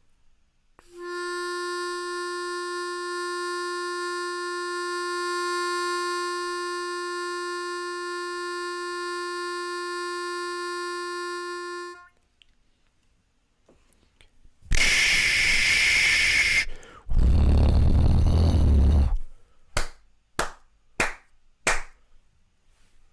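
A harmonica holds one note with a fundamental around 350 Hz and a long ladder of evenly spaced overtones for about eleven seconds, then stops abruptly. After a pause come two long bursts of hissing noise and then four or five short ones. The noise is made on purpose to show a sound with all frequencies present, in contrast to the note's whole-number multiples.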